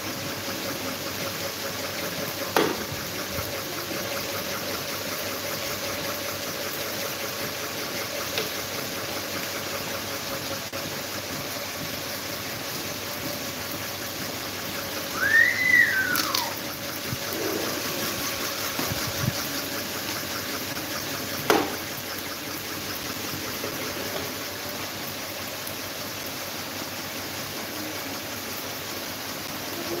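Several electric fans, a red pedestal fan among them, running at a steady whir with a faint hum. Two sharp clicks, one near the start and one past the middle, and a brief high squeal that rises and falls about halfway.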